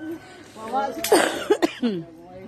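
People's voices without clear words: a loud breathy vocal outburst about a second in, followed by a few short falling vocal bursts.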